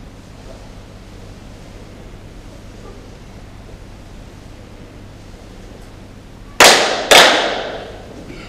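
Two sharp hand claps about half a second apart, part of the aikido opening bow ceremony, each echoing and fading in a large hall.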